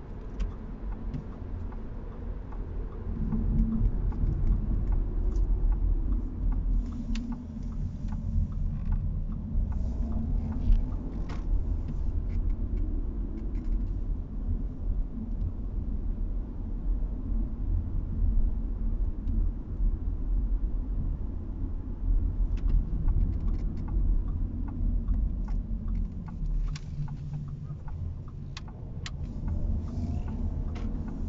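Inside the cabin of a 2021 Audi A4 Avant on the move: a steady low road and engine rumble whose pitch rises and eases a few times as the car speeds up and slows. A few faint clicks show up along the way.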